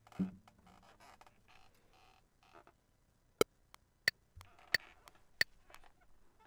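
Four sharp, evenly spaced metronome clicks, about two-thirds of a second apart: the recording software's count-in (pre-roll) before recording begins.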